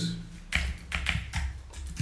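Typing on a computer keyboard: a quick run of key clicks that starts about half a second in, as a search query is typed.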